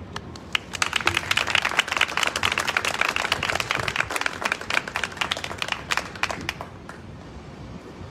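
Audience applauding. It starts about half a second in and thins to a few last claps near the end.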